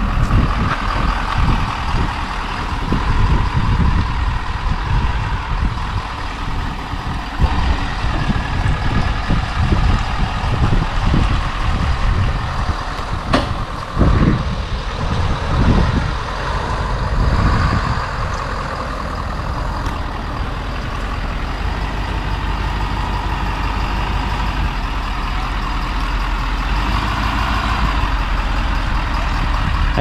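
Ford F-250 Super Duty pickup engine running under load as it slowly pulls a fifth-wheel travel trailer forward, with a steady low rumble and one sharp knock about halfway through.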